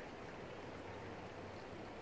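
Faint steady background hiss of outdoor ambience, with no distinct event.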